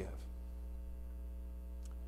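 Steady low electrical hum, like mains hum in a sound system, with a faint click near the end.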